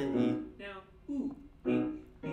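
Vocal-exercise practice with piano: a long sung note ends, a short voice slide falls in pitch about a second in, and single piano notes are struck about twice a second toward the end.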